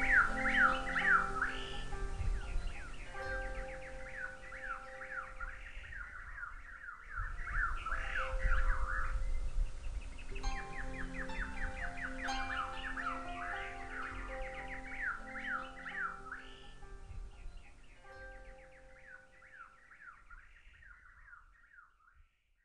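Harp music mixed with birdsong: many quick falling bird chirps over held harp notes. It fades out gradually toward the end.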